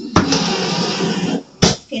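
Electric can opener motor running for about a second and a quarter without cutting, because the can is not engaged on the cutter. It ends with a sharp click near the end.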